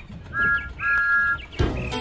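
Two blasts of an animated steam locomotive's two-note whistle, a short one then a longer one, followed about a second and a half in by upbeat children's theme music starting.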